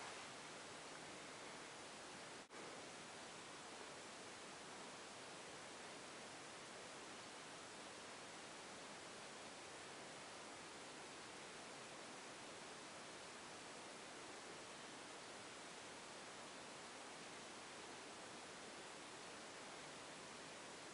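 Near silence: a steady low hiss of room tone, with a brief dropout about two and a half seconds in.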